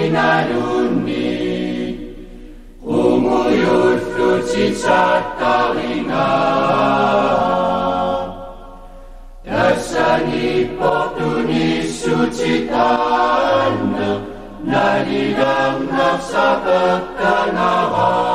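Slow, chant-like singing in long held phrases, with two short breaks between phrases.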